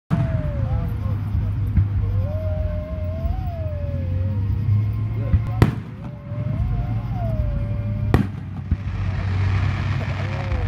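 Aerial fireworks shells bursting: two sharp bangs, about five and a half and eight seconds in, over steady low background noise. A wavering tone, like a voice or music, runs through much of it.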